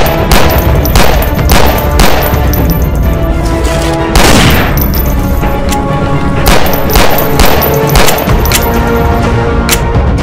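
A pistol gunfight: a dozen or so single pistol shots at irregular intervals, often under a second apart, with one heavier shot about four seconds in that rings on longer. The shots play over background music with held notes.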